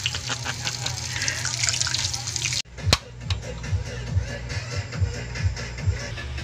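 Hot oil sizzling and crackling around a deep-fried pork leg, then an abrupt cut about two and a half seconds in to background music with a steady beat.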